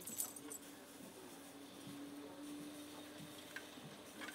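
Quiet soldering at a vise: a few light metallic clicks near the start, from the soldering gun tip and solder wire working the sheet metal, over a faint steady hum.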